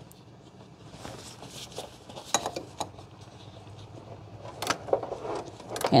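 Metal wrenches clinking and clicking against a master-cylinder mounting nut and stud as the nut is loosened: scattered light metallic clicks, a few louder ones about two and a half seconds in and near the end.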